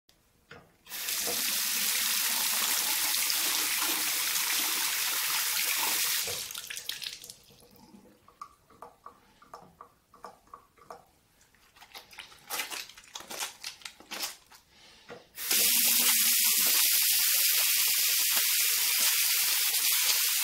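Bathroom mixer tap running into a washbasin: turned on about a second in and shut off about six seconds in, then a quieter stretch of clicks and wet squishing as soap is pumped from a dispenser and hands are lathered, before the tap runs again for the last quarter.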